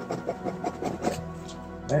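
Palette knife dabbing and scraping paint onto a stretched canvas in quick short strokes, about six a second, stopping about a second in. Soft background music plays underneath.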